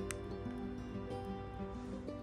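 Background music of soft held notes changing pitch. A single faint click sounds just after the start as the plastic sunglasses frame is handled.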